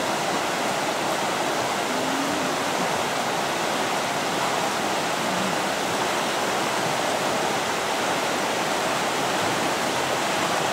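Steady rush of fast river rapids, water tumbling over rocks in a constant, unbroken noise.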